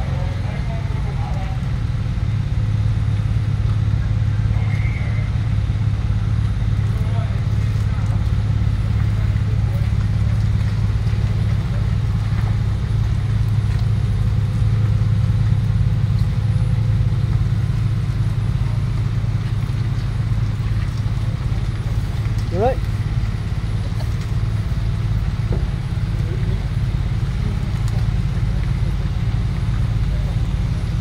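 Heavy-haulage transporter's diesel engine running steadily with a deep, even drone as the multi-axle abnormal load moves slowly past.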